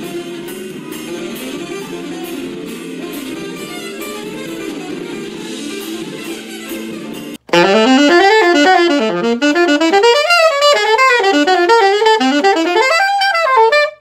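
A live jazz recording of a saxophone solo with a band behind it and a steady ticking beat. After about seven seconds it cuts to a single saxophone, louder and closer, playing a fast bebop line of rising and falling runs.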